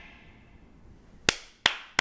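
Background music fading out, then single sharp hand claps: two in the second half, a third right at the end.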